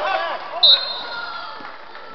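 A referee's whistle blown once in a short, sharp blast a little over half a second in, ringing briefly in the gym, over spectators' voices.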